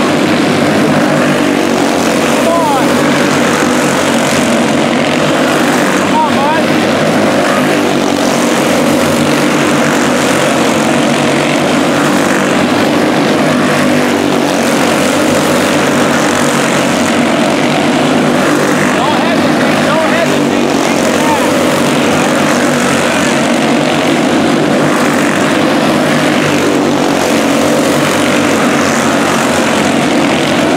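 Several quarter midget race cars' small single-cylinder Honda GX160 engines running at racing speed together, a loud steady buzzing drone.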